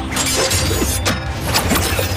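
Sword-fight sound effects: a quick run of sharp, ringing metallic hits and whooshes, about two a second, over a steady low music score.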